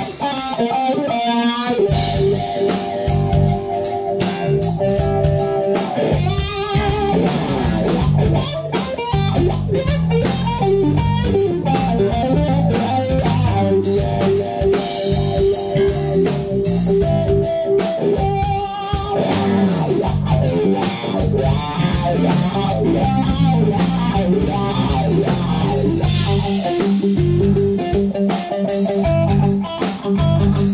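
Live blues-rock band playing instrumentally: an electric guitar solos with long held notes over bass guitar and drum kit.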